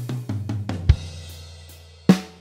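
Programmed acoustic drum kit (EZDrummer samples) playing a slow 50 bpm blues groove: a fill of tom strokes stepping down in pitch under a ringing crash cymbal, closing with a loud low drum hit about a second in, then the cymbal dying away.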